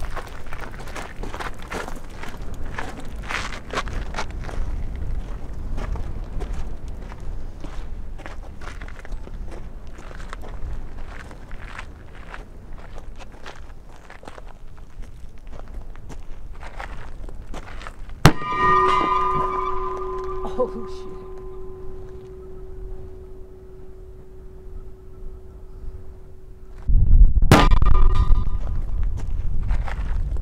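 Wind buffeting the microphone, with faint voices, for most of the stretch. Past the middle a sharp click brings in a steady ringing tone at several fixed pitches. Near the end comes a sudden loud boom, the black-powder bowling-ball cannon firing, the loudest sound of all.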